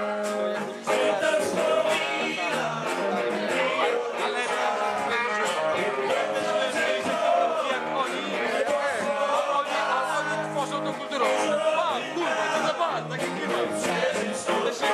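Live band playing rock music with guitar and singing.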